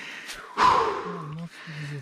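A man's loud, breathy gasp about half a second in, falling in pitch, followed by two short low hums of the voice.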